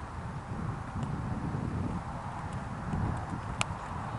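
Wind rumbling on the microphone, then near the end a single sharp crack of a cricket bat hitting the ball.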